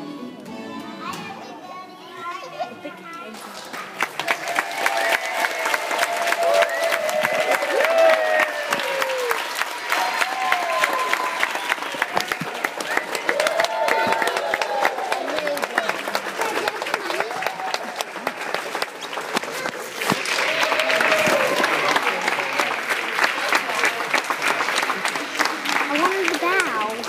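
Quiet music for the first few seconds, then a crowd clapping steadily to the end, with high children's voices singing and calling over the clapping.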